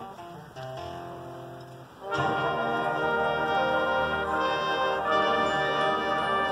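Marching band playing: a soft passage of held notes, then about two seconds in the full band comes in loud with sustained brass chords.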